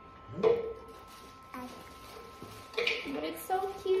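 Short voice sounds, with a sharp knock about a second and a half in and a faint steady high hum underneath.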